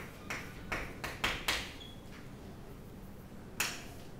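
Chalk on a blackboard while writing a word: a handful of sharp taps and clicks in the first second and a half as the chalk strikes and drags on the slate, then one more tap near the end.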